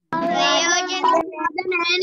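A high voice singing loudly in wavering, held notes, with a short break a little past a second in.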